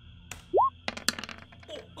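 A short rising electronic bloop, then a quick clatter of clicks: the sound effects of a six-sided die being rolled on a virtual tabletop.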